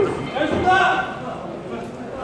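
Voices shouting in a large indoor hall: a short, high-pitched call about half a second in, over the hall's background noise.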